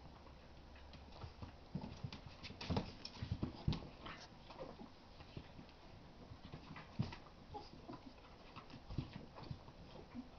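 Two young dogs play-wrestling: an irregular scuffle of claws and paws tapping and scraping on the floor and mat, with knocks of bodies bumping about. It is busiest a couple of seconds in, with one sharp knock about seven seconds in.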